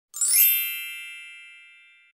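A single bright, sparkling chime sound effect: many high ringing tones struck at once, fading away over about two seconds.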